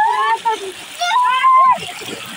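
Water gushing from a pipe into a concrete tank and splashing around bathers, under two loud, high-pitched shouts from boys, the second longer, about a second in.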